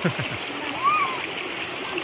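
Shallow forest stream running over rocks, with children splashing as they wade and kneel in the water.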